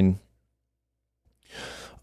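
A man's speech trails off, followed by about a second of silence, then a short audible intake of breath near the end, just before he speaks again.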